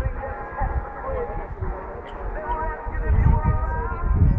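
Indistinct voices and music in the background, with low thudding that grows louder near the end.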